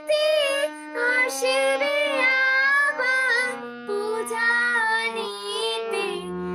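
Harmonium playing a melody in steady reed notes that step from one pitch to the next, with a high female voice singing along and sliding and wavering between notes.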